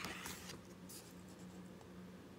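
Faint rustling of a picture book's paper pages as the book is handled, with a couple of soft brushes in the first second, over a low steady hum.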